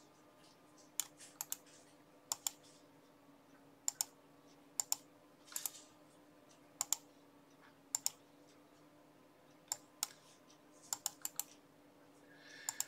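Computer mouse clicking, mostly in quick pairs about once a second, over a faint steady hum.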